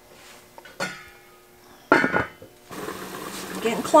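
Metal clanks of a lid and utensil on a stainless steel cooking pot, twice: a light knock about a second in and a louder, ringing clank about two seconds in. A steady hiss comes in from shortly before the end.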